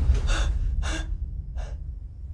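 A person gasping and breathing hard, three sharp breaths about two-thirds of a second apart, the last one fainter, over a low steady rumble.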